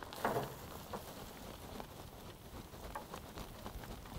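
Potting soil mix pouring from a flexible plastic trug into a planter tray, a steady patter of falling soil.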